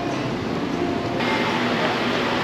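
Steady outdoor background noise with no clear single source. Its character changes abruptly about a second in.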